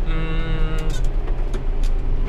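John Deere 6930 tractor's six-cylinder diesel engine running steadily under load in the cab while pulling a cultivator through the soil. A brief held pitched tone sits over it in the first second.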